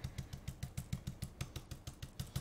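Stencil brush stippling paint through a plastic stencil onto a wooden sign piece: a rapid, even series of soft, faint dabbing taps, about ten a second.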